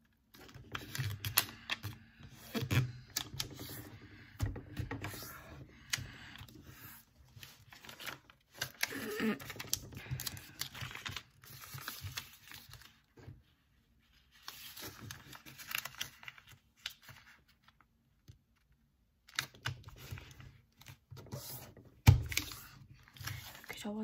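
Square sheet of origami paper being folded and creased by hand on a table: irregular rustling, crinkling and small clicks as the paper is handled and creases are pressed, with a few short pauses. There is one sharp tap about two seconds before the end, the loudest sound in the stretch.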